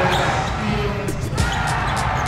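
Basketball game sound in a gym: a basketball being dribbled on the hardwood court over a steady din of crowd noise.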